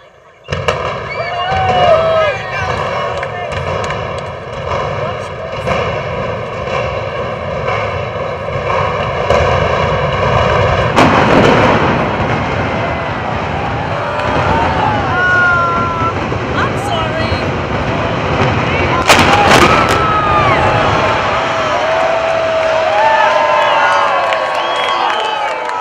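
A crowd of spectators chattering and calling out, over a steady hum that stops about eleven seconds in. About nineteen seconds in comes a quick volley of sharp cracks from the demolition charges imploding the Amway Arena, the loudest sound here, with the crowd's shouts going on after it.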